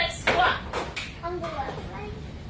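Short bits of a person's voice, with a few brief knocks between them.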